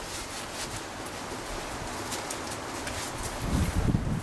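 Padded fabric gloves rustling and rubbing as they are pulled onto the hands, against a steady patter of light rain with small drip clicks. The handling grows louder with a few soft bumps near the end.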